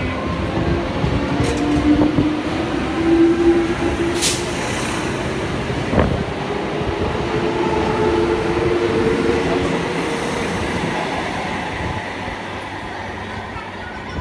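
ICF-built electric multiple unit (EMU) local train running past close by: a steady rumble of wheels on rails with a motor whine that rises in pitch over the first few seconds. A brief high hiss comes a little after four seconds and a single sharp clack about six seconds in, and the noise eases off near the end.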